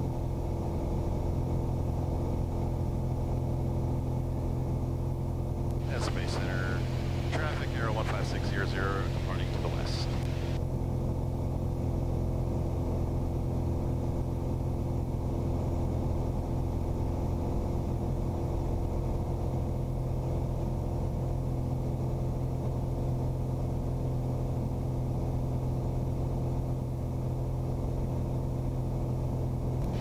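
Steady drone of a Piper Arrow II's four-cylinder Lycoming IO-360 engine and propeller in cruise flight, holding an even pitch.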